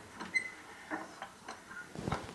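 Small objects being handled on a wooden shelf: a few light knocks and taps, with a brief high ring about a third of a second in.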